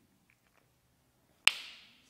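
A single sharp click about a second and a half in, with a short room echo, after a near-silent pause: a whiteboard marker's cap being snapped shut.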